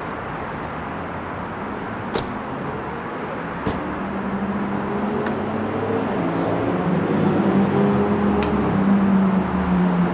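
Street traffic with a motor vehicle's engine running, a low hum that grows louder from about four seconds in and falls away near the end, with a couple of faint clicks early on.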